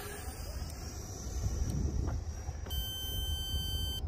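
RC transmitter's flight timer alarm sounding a steady, high beep for the last second or so, signalling that the timed flight is up.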